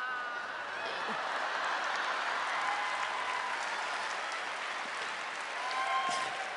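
Theatre audience applauding steadily.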